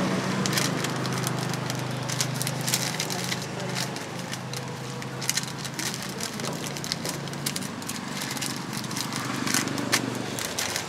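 Paper crinkling in short, irregular crackles as a burger is wrapped by hand, over a steady low hum that fades about three-quarters of the way through.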